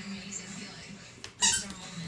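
A husky puppy's small squeaky toy ball squeaking once as the puppy bites it: one short, loud, high squeak about one and a half seconds in.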